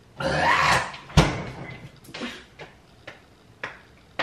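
Drinking from a plastic water bottle: a breathy swallow in the first second, then a sharp knock about a second in and a few light clicks after.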